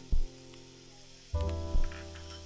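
Tomatoes, garlic, chillies and capers frying in oil in a pan, a steady sizzling hiss. It sits under background music of held chords with three deep drum thumps, which are the loudest sounds.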